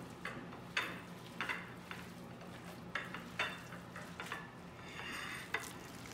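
Hands kneading and mixing a wet chopped-shrimp mixture on a ceramic plate: soft, irregular squishing strokes.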